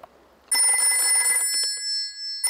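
Old-fashioned rotary telephone bell ringing for an incoming call: one ring about a second long, starting half a second in.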